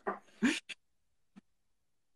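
A short laugh with a rising, squeaky pitch in the first second, then near silence.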